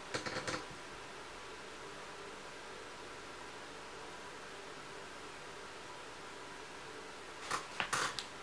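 Faint steady hiss of room tone with a faint hum and no distinct event. A few short clicks come in the first half-second and again near the end.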